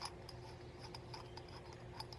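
Faint small ticks and rubbing of metal threads as a polished stainless-steel 26650 mechanical vape mod is unscrewed by hand, with one light click at the start.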